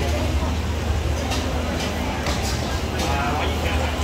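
Busy street-market background: a steady low hum under indistinct voices, with a few sharp clicks and clatters.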